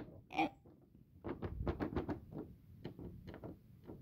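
A door's metal knob and latch clicking and rattling as the knob is turned and the door worked open: a click at the start, then a rapid run of light clicks and rattles in the middle.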